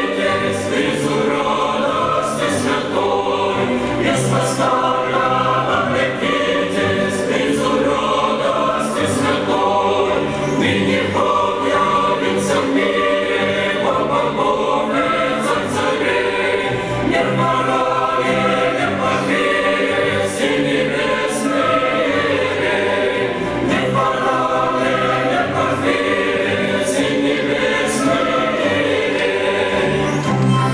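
A mixed choir of men's and women's voices singing a Christmas carol (koliadka), continuously and at a steady level.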